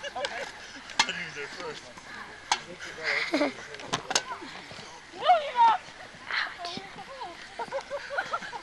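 Several sharp clacks of sticks striking during a stick-and-can game, mixed with the players' voices and a loud shout about five seconds in.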